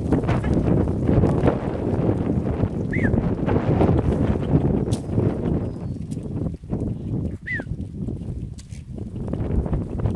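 A large goat herd moving over dry ground, heard as a steady, dense shuffling and trampling of many hooves. Two short high chirps come about three seconds in and again about seven and a half seconds in.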